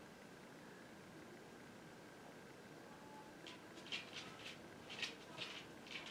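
Make-up brush sweeping over the skin of the cheek: faint room tone at first, then a handful of short, soft swishes in the second half.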